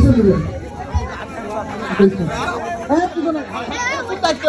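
Several men's voices talking at once in a walking crowd, overlapping chatter without a pause.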